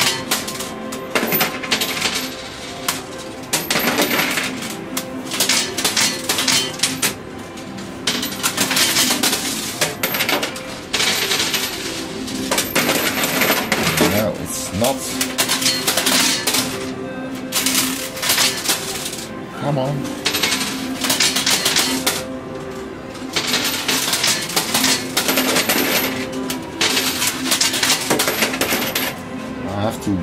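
Euro coins clinking and clattering in an arcade coin pusher machine: dense runs of small metallic clicks as coins drop onto the playfield and are shoved along, coming in stretches with short pauses between.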